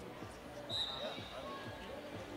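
A roller derby referee's whistle sounds once, a single short high blast about two-thirds of a second in, starting the jam, over the chatter of a crowd in a hall.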